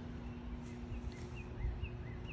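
Faint outdoor ambience: a few short, high bird chirps spaced through the moment, over a steady low hum and a light low rumble.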